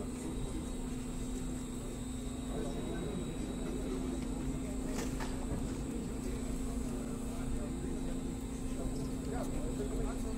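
Steady hum of a seatbelt rollover simulator's drive as it turns a car body over, with people talking in the background and a single click about halfway through.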